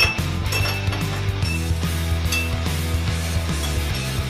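A metal spoon stirring in a small glass, clinking against the rim a few times with a short glassy ring, over background music with a steady bass.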